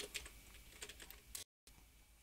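Faint computer keyboard typing: a handful of separate key clicks over faint hiss, cut off briefly about a second and a half in.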